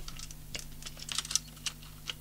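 Light scattered clicks and taps of a small plastic case, the housing of an Opticum HD AX150 satellite receiver, being handled and pulled apart by hand.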